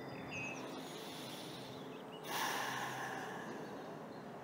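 A long, audible breath from the meditation guide, starting suddenly about halfway through and fading over a second and a half, over a faint steady background with a few faint bird chirps near the start.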